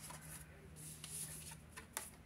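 Faint rustle of tarot cards being picked up and slid against one another, with a soft tick near the end.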